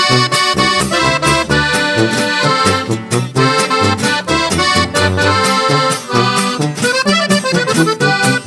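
Accordion-led norteño music with a running bass line: an instrumental passage between sung verses of a corrido.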